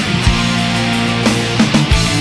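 Post-grunge rock band recording playing: distorted electric guitars and bass holding chords over a drum kit, with several kick-drum hits.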